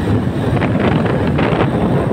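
Wind rushing over the microphone of a moving motorcycle, a loud steady noise with the bike's running sound underneath.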